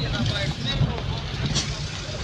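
Steady low rumble of a car's engine and tyres heard from inside the cabin while driving slowly, with faint voices in the background.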